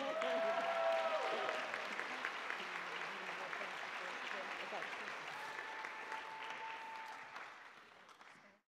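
Audience applauding, with a few voices cheering over the clapping; the applause dies down toward the end.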